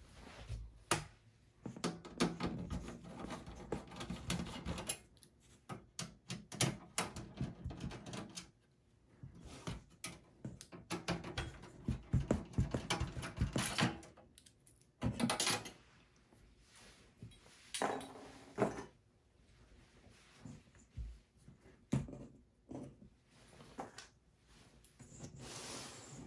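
A screwdriver working a screw in a desktop PC's steel chassis, along with hands handling the case's metal and plastic parts: scattered clicks, scrapes and knocks at irregular intervals.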